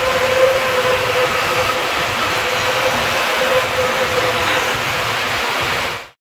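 Band saw running with a shop vacuum on its dust port: a loud, steady whir with a steady hum underneath, cutting off suddenly at the end.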